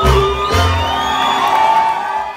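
Live mariachi band with violins playing loudly: two deep bass strokes in the first half-second, then a sustained chord.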